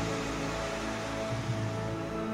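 Slow background music with long held tones, over a steady hiss of rushing river water.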